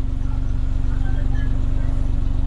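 Car engine idling steadily, heard from inside the cabin, with an even low pulsing exhaust note and a steady hum.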